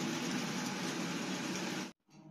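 Beef steak and garlic sizzling in a stainless-steel frying pan, a steady hiss that cuts off suddenly near the end.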